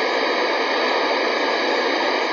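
Television static: a loud, steady hiss of white noise, used as a sound effect.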